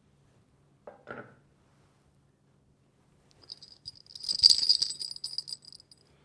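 A metallic jingling rattle, like small bells shaken, starting about halfway through and lasting about two seconds, preceded by two faint short sounds about a second in.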